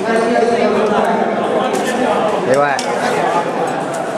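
Voices of children and adults chattering over one another, with a few faint clicks.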